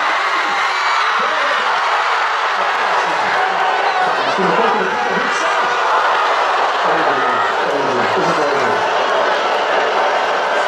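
A large crowd of football supporters, with many voices talking and calling out at once at a steady level.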